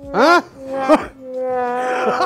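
A voice wailing in drawn-out notes: a short cry that rises and falls, a brief second one about a second in, then a long held note to the end.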